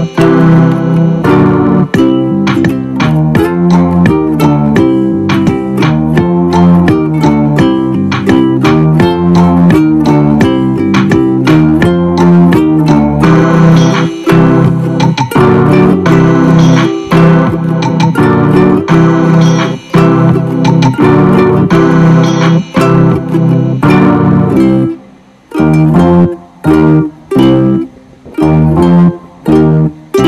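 Guitar music: a continuous run of plucked notes, which breaks into short separated notes with brief pauses in the last few seconds.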